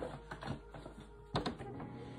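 A few sharp light taps and clicks of playing cards being handled on a table, the loudest pair about a second and a half in, over soft, steady background music.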